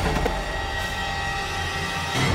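Dramatic background score: a sustained synth drone of several held tones over a steady low rumble.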